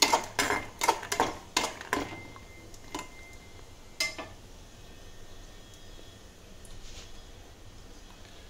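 Metal spoon clinking and scraping against a metal kadai while stirring peanuts roasting in a little oil. There is a quick run of clinks in the first two seconds, then single knocks about three and four seconds in, and after that it goes quiet.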